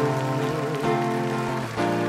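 Nylon-string silent guitar strummed in chords, amplified, changing chord about a second in and again near the end.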